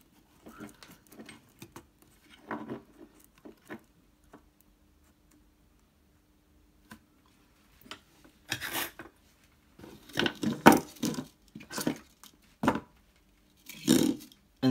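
Small clicks and rustles of wire being handled and fed onto a pot terminal on a metal guitar control plate. After a few quiet seconds with a faint steady hum, a run of louder clattering and rustling, the loudest sound here, comes from the bench.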